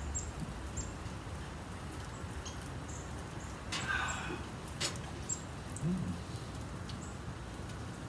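Quiet outdoor ambience with faint, short high-pitched ticks every second or so. There is a brief breathy sound about four seconds in and a short low 'mm' from a person about six seconds in.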